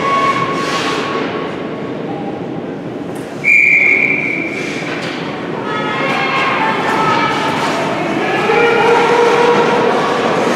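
A referee's whistle blown once, a sharp blast of about a second, a few seconds in, over a steady arena din. From the middle on, several spectators' voices are raised, shouting over one another.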